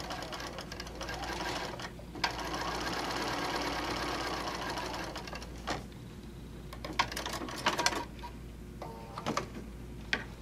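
Domestic sewing machine stitching a seam across fabric pieces. It runs in two stretches, a short one and then a longer one from about two seconds in to nearly six seconds. A few sharp clicks follow in the second half.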